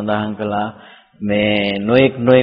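Only an elderly Buddhist monk's voice, intoning in a slow, drawn-out chant-like manner, with a short pause about a second in.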